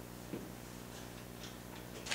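A pause in speech: quiet room tone with a faint steady electrical hum, and one brief soft sound about a third of a second in.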